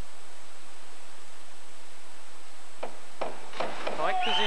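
Steady hiss of an old broadcast recording with faint pool-hall ambience; in the last second or so, a few short sharp knocks of a diving springboard and the splash of a diver's entry.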